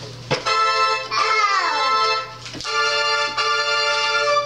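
Portable electronic keyboard playing held chords in an organ-like voice, one chord changing to the next about two-thirds of the way through.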